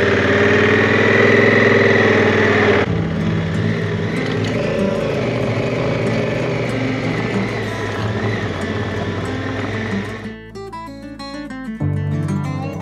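Honda Africa Twin's parallel-twin engine running steadily as the motorcycle rides along a gravel track, heard from on the bike; the sound changes abruptly about three seconds in. Acoustic guitar music comes in near the end.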